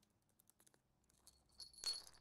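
Small jingle-bell toy jangling briefly near the end as a budgerigar knocks it across a wooden floor, ringing high, after a few faint ticks.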